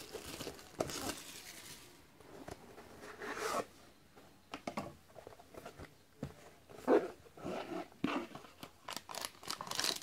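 Plastic shrink wrap crinkling and crumpling in the hands, followed by scrapes and sharp knocks of a cardboard trading-card box being handled and opened, the loudest knock about seven seconds in.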